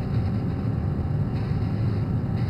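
Steady low hum of a small circulating-air fan, from the Little Giant incubator's fan.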